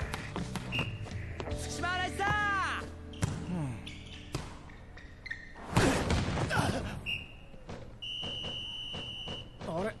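Soundtrack of an anime volleyball rally: ball hits and court sounds, the loudest hit about six seconds in, with voices and background music. A steady high tone is held for about a second and a half near the end.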